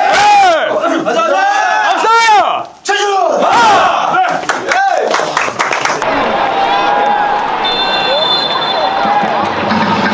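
A football team shouting a loud huddle cry together, about five rising-and-falling shouted calls in the first five seconds. After that comes the steady noise of a stadium crowd at a second-half kickoff.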